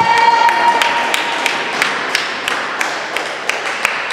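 Spectators clapping in rhythm, about three claps a second, while the crowd's cheering dies away.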